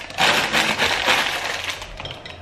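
Plastic packet of Knorr vegetable bouillon crinkling and crackling as it is handled, about a second and a half of dense crackle.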